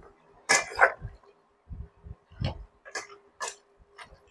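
Metal spoon stirring marinated chicken pieces in a stainless steel bowl, working in the seasonings and caramel sauce. It gives a few separate clinks and scrapes against the bowl, the loudest about half a second in.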